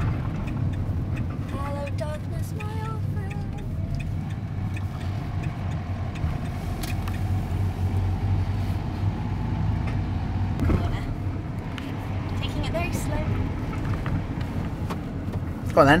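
Engine and road noise of a horse lorry heard inside the cab while driving: a steady low drone, with a brief knock about two-thirds of the way through.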